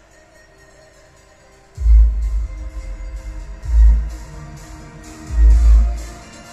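Bass-boosted electronic music played through a 2.1 speaker system (subwoofer and two satellite speakers) driven by a TDA7265 amplifier board. It opens quietly, then heavy deep subwoofer bass hits come in about two seconds in and repeat roughly every two seconds.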